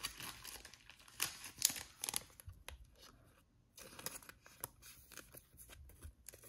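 Soft plastic crinkling and rustling as a trading card is slid into a thin plastic card sleeve, in faint scattered crackles with a short lull about halfway through.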